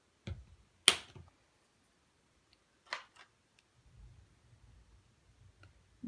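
A few short, sharp clicks and taps from art supplies being handled at a work table, the loudest about a second in, followed by a faint low rustle.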